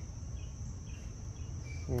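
Insects trilling: a steady high-pitched chorus with faint short chirps repeating a few times a second, over a steady low hum.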